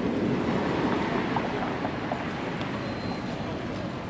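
City street ambience: a steady rumble of traffic, with faint voices of passers-by.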